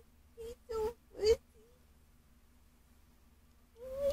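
A woman's high-pitched, wordless whimpers imitating a fussy baby: four short whines in the first second and a half, a quiet stretch, then another starting near the end.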